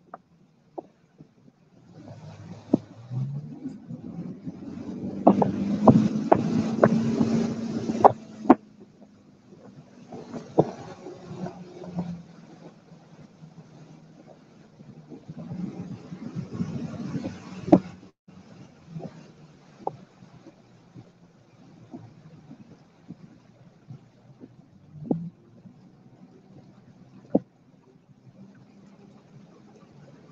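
A boat motor running slowly with a steady low hum, water rushing along the hull in two louder swells, and scattered sharp knocks from submerged sticks and logs striking the hull.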